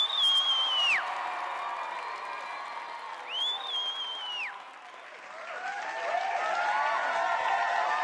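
Audience applause and cheering from a sitcom laugh-and-cheer track. Two long whistles rise, hold and drop, one at the start and another about three seconds in. Whooping voices build up from about five seconds in.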